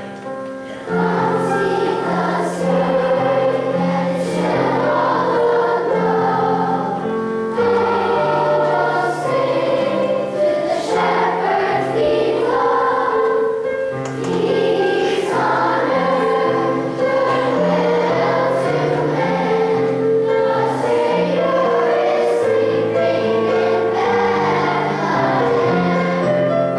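A large children's choir singing a Christmas song in unison, with piano accompaniment; the voices come in about a second in and hold long notes.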